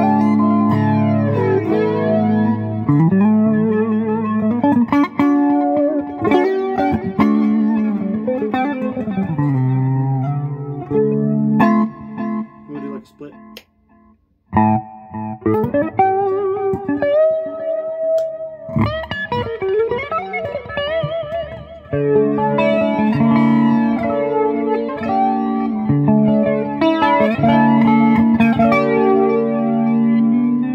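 Epiphone Les Paul Custom Prophecy electric guitar played clean on its neck Fishman Fluence pickup through a Boss Katana amp: ringing chords and single-note lines with string bends and vibrato. The playing stops briefly around the middle, then picks up again.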